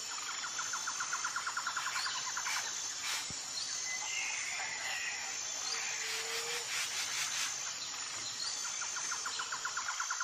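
Nature ambience of insects and birds: a steady high insect whine, a rapid pulsing trill in the first couple of seconds and again near the end, and scattered short bird chirps, with a brief low held note in the middle.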